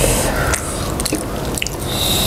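Close-miked wet eating sounds of spicy chicken feet being chewed and sucked, with a string of sharp, sticky mouth clicks and smacks.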